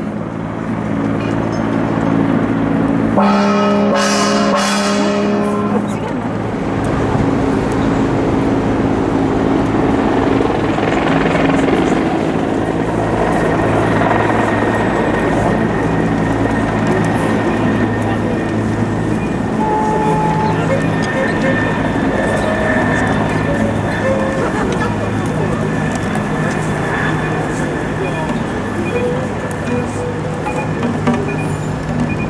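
Several voices sounding together over steady city street traffic, with a brief louder pitched sound about three seconds in.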